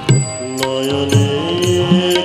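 Bengali devotional bhajan: a male voice singing long held notes, rising about one and a half seconds in, over keyboard and regular drum beats.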